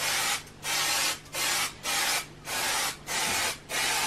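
Aerosol spray can hissing in short, regular bursts, about seven in four seconds, each under half a second, as the nozzle is pressed and released on each pass.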